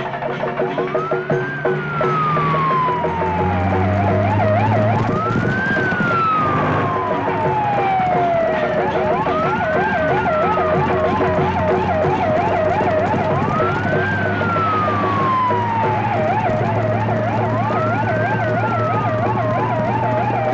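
Siren on a slow-moving official car with a red beacon, sounding a repeating cycle about every four seconds: a quick rise, a long falling wail, then a fast warble. A steady low hum runs underneath, and percussive music fades out in the first two seconds.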